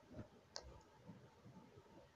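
Near silence with two faint clicks in the first half second.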